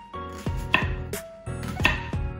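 Chef's knife slicing through a leek onto a wooden cutting board, a few sharp irregular cuts, with background music of steady plucked notes underneath.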